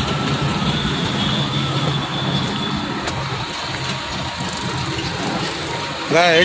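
A motor vehicle's engine running close by over street noise, its low steady hum easing off about two seconds in.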